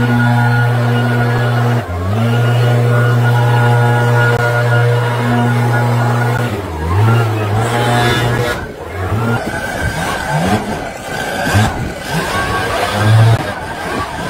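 Two-stroke gas backpack leaf blower running at high throttle, let off briefly about two seconds in and again around the middle, then revved up and down several times in the second half. Background music plays along with it.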